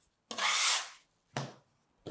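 Plastic bench scraper scraping across a marble countertop as it lifts and turns a sheet of dough, a rough rub of about half a second, followed by a short soft knock about a second and a half in.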